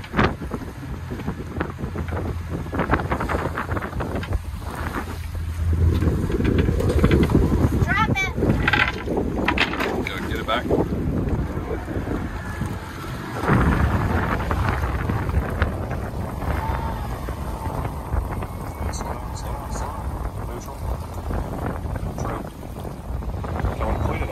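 Wind buffeting the microphone aboard a small outboard-powered boat, with a steady rush of boat and water noise that swells louder about six seconds in and again halfway through, and brief voices.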